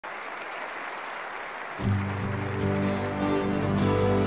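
Audience applause, then about two seconds in an orchestra with a rock band comes in with sustained low chords, strings carrying the harmony and light, even ticks above.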